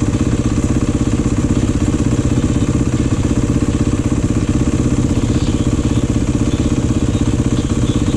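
Beta dirt bike engine idling steadily and evenly.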